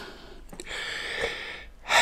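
A short click, then a man's long, noisy breath lasting about a second, with no voice in it.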